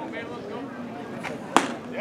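A pitched baseball popping into the catcher's leather mitt: one sharp smack about one and a half seconds in, over faint background voices.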